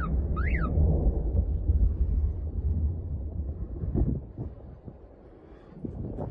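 Deep rumble of a military transport plane's crash explosion rolling on and fading away over about four seconds. A short high-pitched cry sounds near the start, and a brief knock comes about four seconds in.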